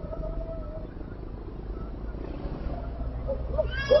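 A young child crying and wailing in distress after being cut in the face: one drawn-out cry at the start, then a few short wails, the loudest just before the end, over a steady low street hum picked up by a surveillance-camera microphone.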